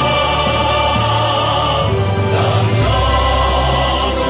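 Male vocal quartet singing in harmony into microphones, holding long notes.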